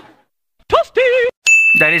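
A single bright bell ding about one and a half seconds in, its clear tone ringing on steadily; just before it comes a short wavering pitched sound.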